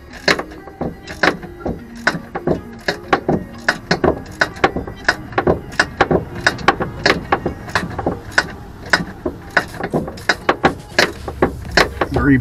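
Hand wrench working a bolt on a car's rear suspension control arm, with irregular sharp metallic clicks and knocks several times a second.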